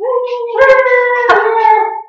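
A woman's long, pitched wail, held for about two seconds and rising slightly at the start: a pained cry at the burn of a shot of hot sauce.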